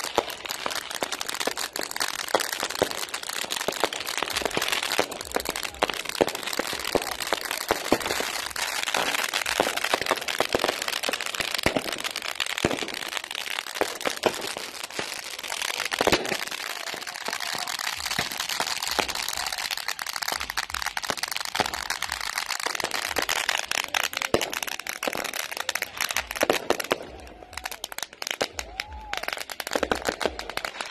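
Fireworks bursting overhead: a dense, continuous crackle packed with sharp bangs, thinning to scattered reports near the end.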